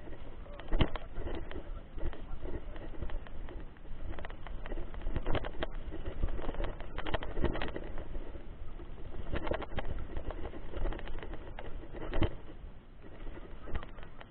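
Mountain bike rolling over a rocky, rutted dirt road: irregular clattering knocks as the bike and its camera mount jolt over stones, over steady rough tyre and wind noise with a low rumble on the microphone.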